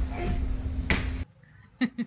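Sharp slaps of babies' hands on a hardwood floor as they crawl, over a noisy room with a low steady hum. The sound cuts off suddenly about a second in, and a few short clicks follow near the end.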